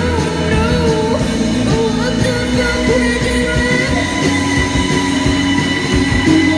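Live band music through a festival PA: a wavering sung melody over sustained electric guitar and synth tones with a steady bass underneath.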